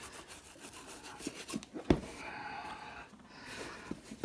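Small sponge applicator rubbing black wax shoe polish into a leather work shoe in quick strokes, easing off in the second half. A single sharp knock sounds about two seconds in.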